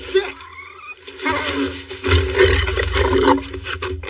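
Film sound effect of an alien creature growling and roaring, a short rasp at the start, then a louder, longer rasping roar from just over a second in, loudest around two to three seconds.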